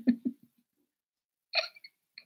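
A woman's short giggle in quick voiced pulses, dying away within the first half second. About a second and a half in, a brief breath with a few small clicks.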